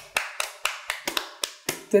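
Hands clapping in an even, steady rhythm of about four claps a second.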